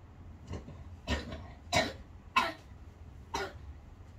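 A person coughing about five times in short, separate coughs, the two in the middle loudest, over a low steady room hum.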